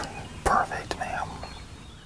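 A man laughing softly in a whisper, a few breathy bursts that trail off.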